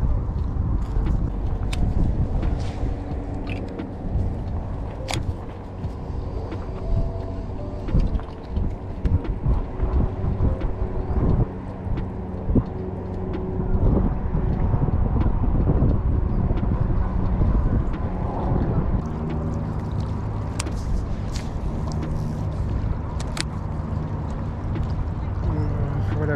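Wind rumbling on the microphone, with a low droning hum underneath that changes pitch about two-thirds of the way through, and scattered sharp clicks and taps from a baitcasting rod and reel being handled.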